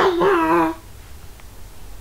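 A brief, high, wavering vocal whine that dies away within the first second.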